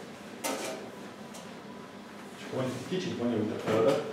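A brief handling noise about half a second in, then indistinct speech from about two and a half seconds in.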